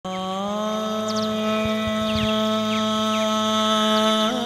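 Opening of a semi-classical devotional song track: one long note held steady, rising slightly about half a second in, with a few faint high falling glides over it.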